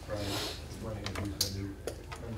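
Low voices talking in a meeting room, with a few short clicks and taps, one sharper click about one and a half seconds in.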